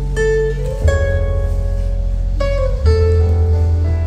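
Instrumental dance music with plucked-string notes over held bass notes, changing chord about every second.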